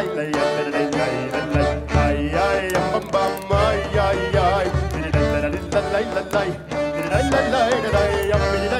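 Klezmer band playing a Hanukkah medley: a wavering, ornamented melody over a steady beat in the bass.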